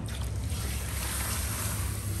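Water running from a handheld shower sprayer over hair into a salon shampoo basin: a steady rushing hiss, with a low steady rumble underneath.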